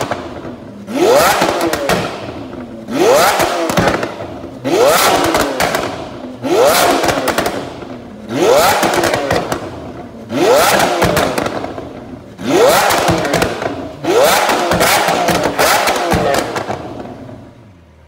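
Lamborghini Aventador S LP740-4's naturally aspirated V12, breathing through an Fi Exhaust valvetronic catback with catless downpipes, blipped from idle eight times, about once every two seconds. Each blip rises sharply in pitch, then falls away with crackles and pops on the overrun. The revs die down near the end.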